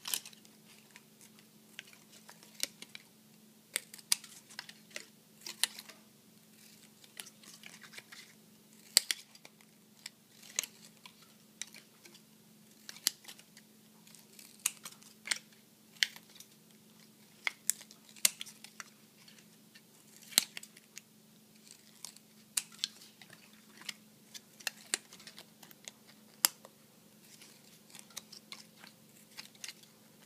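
Scissors snipping the thin plastic of a bottle, trimming the edges of petal strips. The snips come as an irregular run of sharp clicks, sometimes two or three close together, over a faint steady hum.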